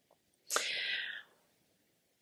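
A woman drawing one short, audible breath about half a second in.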